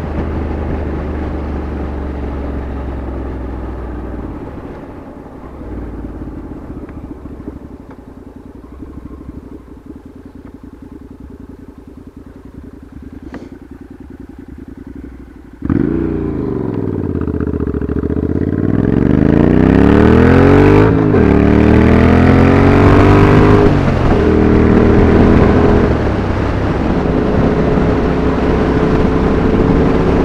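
Motorcycle engine easing off and running low and quiet for several seconds, then, about halfway through, suddenly loud as it pulls away hard. Its pitch climbs steeply, breaking at each gear change, twice, before it settles into a steady cruise.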